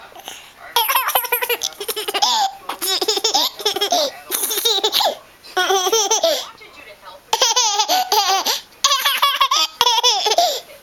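A toddler laughing hard in repeated bouts of high, wavering laughter, starting about a second in, with short breaks for breath between bouts.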